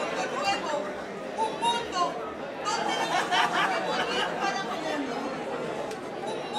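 A woman's voice speaking into a stage microphone, amplified.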